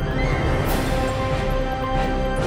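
Closing theme music with steady sustained tones, and a brief rushing swell of noise about half a second in.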